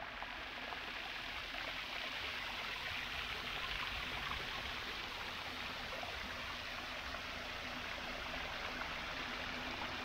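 Water running and splashing down a small stepped rock cascade, a steady, even sound.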